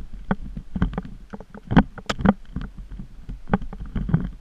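Irregular clatter of knocks and clicks, several a second and unevenly spaced, over a low rumble, as the rig carrying the camera jolts along a rough dirt trail. The two loudest knocks come just under halfway in.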